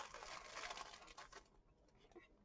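Faint rustling of a plastic zip-top bag of paper game pieces being shaken and rummaged through, dying away after about a second and a half.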